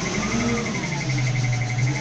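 Tadano 30-ton crane's cab warning buzzer beeping rapidly at a high pitch, about six beeps a second, cutting off at the very end. It is the end-of-stroke alarm, sounding with the hook block hoisted up near the boom head.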